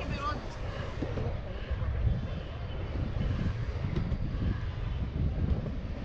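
Surfskate wheels rolling over asphalt under a steady low rumble, with wind buffeting the microphone as the board moves.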